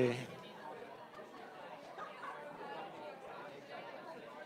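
Faint chatter of several voices in a large hall, well away from the microphone.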